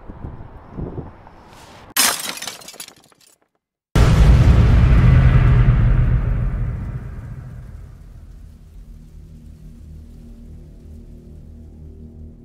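Trailer sound effects: a short crash like breaking glass about two seconds in, then a moment of silence, then a loud deep boom that fades slowly into a low, dark ambient drone.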